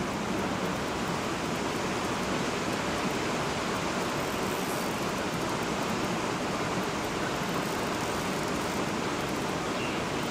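Steady rush of water from the river dam, an even roar with no change.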